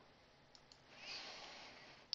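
Near silence: room tone, with two faint clicks of a computer mouse about half a second in.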